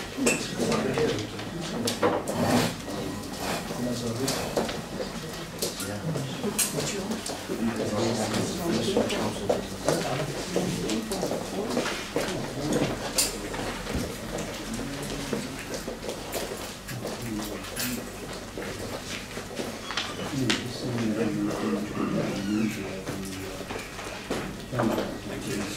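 Indistinct chatter from many people in a meeting room, with scattered knocks and clatter as chairs are moved about.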